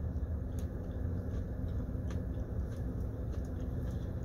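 A person chewing a bite of milk chocolate with crunchy pretzel pieces, with faint scattered crunches, over a steady low hum inside a car.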